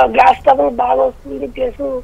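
Speech over a telephone line: a caller talking, the voice thin and cut off above the middle range.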